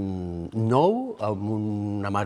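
A man's voice in long, held, steady-pitched sounds with short breaks and a few pitch glides: drawn-out hesitation sounds as he starts to speak.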